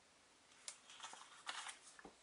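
Faint handling of paper stickers: a short click a little past half a second in, then a few soft rustles as the stickers are flipped off a stack, otherwise near silence.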